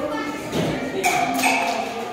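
Hall chatter with a few dull thumps, and a brief high voice calling out about a second in.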